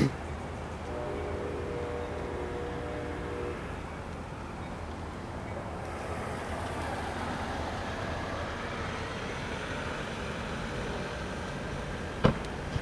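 Diesel passenger locomotive's multi-tone horn sounding one held chord for about two and a half seconds, starting about a second in, over the steady rumble of the moving train. A sharp knock comes right at the start.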